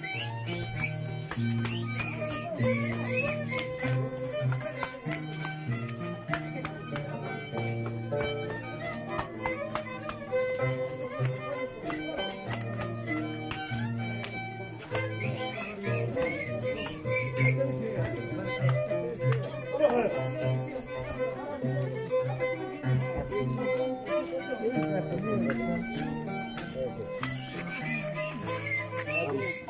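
An Andean harp and violin playing a traditional carnival tune together, the harp's plucked bass notes stepping steadily under the violin melody.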